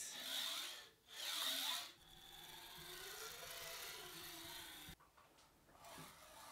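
Linear-guide carriage block rolling along a steel linear rail when pushed by hand. There are two short, quick runs in the first two seconds, then a quieter glide of about three seconds whose whirring pitch rises and falls as the carriage speeds up and slows down.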